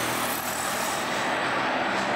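Road traffic passing close by: a steady vehicle engine and tyre noise that holds at an even level.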